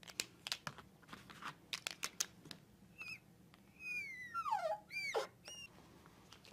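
Marker on a glass lightboard: a run of short clicks and taps, then squeaks in four short squeals, several sliding down in pitch, as a box is drawn around the written answer.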